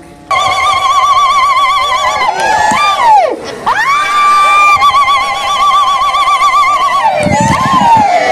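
Women ululating: high, trilled, wavering cries held for a couple of seconds at a time, with steep falling swoops about three seconds in and again near the end.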